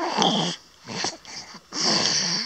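Breathy, throaty voice sounds in three bursts about a second apart.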